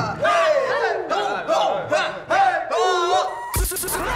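Several young men yelling and whooping together, overlapping wordless cries as they square up for a drink-chugging race. Near the end a sharp hit cuts in as music starts.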